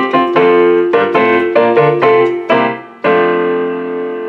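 Piano-sounding keyboard music: a quick run of chords, then one long held chord from about three seconds in, slowly fading.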